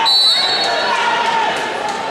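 A referee's whistle: one short, shrill blast just under a second long, over a gym crowd shouting and talking.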